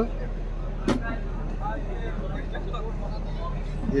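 Steady low mechanical hum with faint background voices, and one sharp click about a second in.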